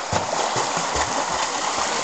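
Pool water splashing continuously as a swimmer flutter-kicks face down, his feet breaking the surface.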